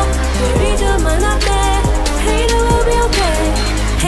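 A woman singing a K-pop cover, two of her own vocal tracks layered, over an instrumental backing track. The track has a steady deep bass and repeated falling, swooping notes.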